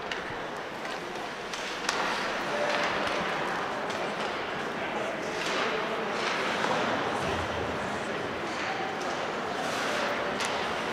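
Ice rink game sound: hockey skate blades scraping and carving the ice, with a sharp knock of a stick or puck about two seconds in, over a low murmur of spectators' voices in the arena.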